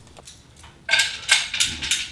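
Steel bolt and washers clinking and clicking against a steel rack post as they are fitted by hand. The clicks come in a quick irregular run starting about a second in.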